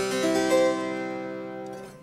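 A 1972 Frank Hubbard harpsichord, a copy of a Ruckers–Taskin ravalement, playing a chord built up note by note over the first half second and then left ringing as it fades. Its plucked tone sounds somewhat twangy, which the player puts down to the dry winter weather affecting the instrument.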